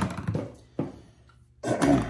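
A few light knocks and a click as small office items are handled and set into a box, then a man coughs near the end.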